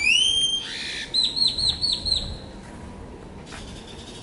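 A bird calling close by: one loud rising whistle, then a quick run of about six short repeated chirping notes.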